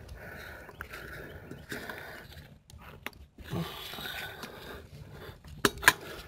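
Faint scraping of pliers bending a cotter pin around a castellated axle-nut cap on a car's front hub, with two sharp metallic clicks near the end.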